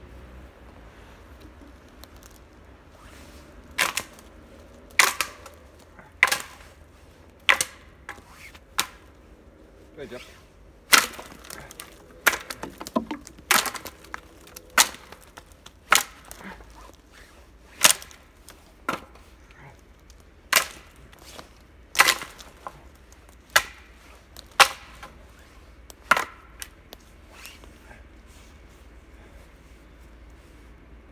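Dead conifer branches being snapped by hand for firewood: a series of sharp wooden cracks, about one a second, starting a few seconds in and stopping a few seconds before the end.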